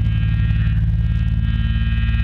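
Electric bass held on one low, distorted note through its amplifier: a loud, steady buzzing drone with no drumming.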